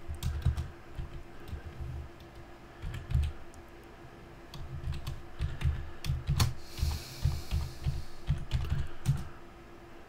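Computer keyboard keystrokes in irregular runs of clicks with a short lull near the middle, over a faint steady hum.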